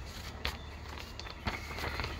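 A few soft knocks and rustles as a paper magazine is handled and repositioned close to the microphone, over a low steady hum.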